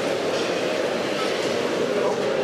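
Steady hubbub of a busy exhibition hall: many indistinct voices chattering over a constant background rumble.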